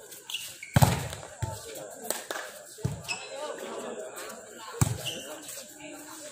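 A volleyball being hit during a rally on an outdoor concrete court: four sharp smacks of hands and arms on the ball, the loudest about a second in. Voices of players and onlookers are heard between the hits.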